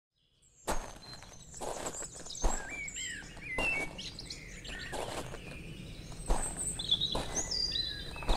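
Footsteps on outdoor ground, a step roughly every second, with several birds chirping and singing, starting just under a second in.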